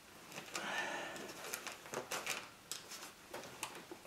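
Small irregular clicks and a brief scrape of a screwdriver working at a rubber fuel-line connection on a fuel rail, prying it loose with mild force.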